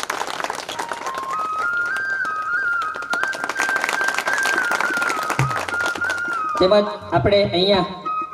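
Audience clapping over instrumental music whose single melody line steps up and holds a high note; a man begins speaking over a microphone near the end.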